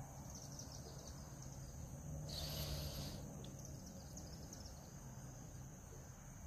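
Faint outdoor ambience with a steady high-pitched insect drone and a low hum, and a brief brighter swell of the insect sound about halfway through. The fuel cleaner trickling through the funnel is not clearly picked out.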